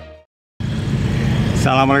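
Theme music fading out, a brief moment of silence, then steady street traffic noise from passing vehicles.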